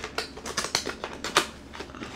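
A paperboard product box being torn and pried open by hand: an irregular run of clicks, snaps and crinkles, the sharpest about one and a half seconds in.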